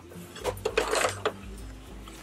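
A 5x12 repositionable plastic embroidery hoop being handled and clipped onto the brackets of an embroidery machine's arm: a quick run of light clicks and knocks with fabric rustling in the first half, then softer handling. Faint background music underneath.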